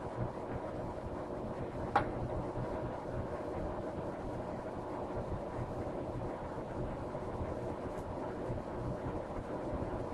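Steady low background hum and noise, with one sharp click about two seconds in and a faint tick near eight seconds.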